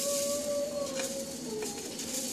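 A baby's voice in the background: one long, steady coo, sinking slightly in pitch, with a couple of faint light clicks.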